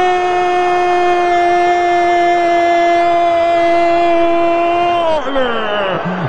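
A radio football commentator's drawn-out goal cry, one long "Gooool" held on a steady high pitch, sliding down in pitch about five seconds in as it ends.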